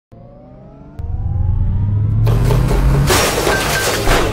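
Sound-designed logo intro sting: faint rising tones, then a sudden hit about a second in that opens a loud low rumble, followed by two loud noisy bursts at about two and three seconds in.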